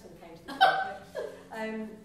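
A person's voice in short bursts without clear words: a loud one about half a second in, then two more, the second falling in pitch.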